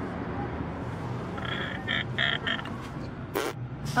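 Steady low rumble inside a car. About a second and a half in come four short croaky, quack-like vocal sounds, then a brief rush of breath or rustle near the end.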